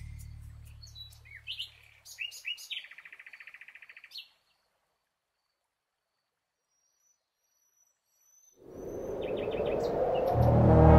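Small birds chirping, then a fast trill about three seconds in, over the fading tail of a low bass note. Near silence follows for about four seconds, and then a rush of noise swells up near the end.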